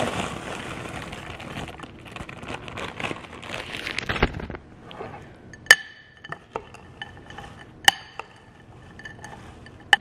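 A spoon stirring chopped corn salsa in a glass bowl: soft, moist rustling and scraping of the vegetables, then two sharp clinks of the spoon against the glass, about two seconds apart, each ringing briefly, with a few lighter taps between.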